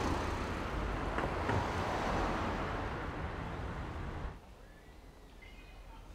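Street traffic: a car passing close by, a steady rush of tyre and engine noise that cuts off sharply about four seconds in, leaving only quiet ambience.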